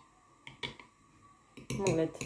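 A metal teaspoon clinking a few times against a ceramic mug while stirring, in short sharp clicks about half a second in and again near the end.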